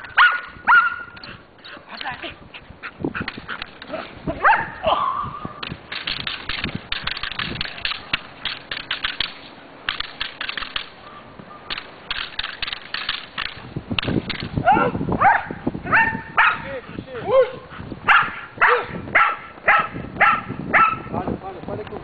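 A dog barking in bursts, ending in a fast run of barks, about two a second, over the last several seconds. In the middle there is a stretch of irregular clattering noise.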